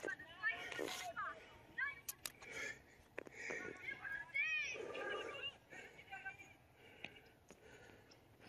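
Faint, distant voices talking, with no clear words, and a couple of light clicks.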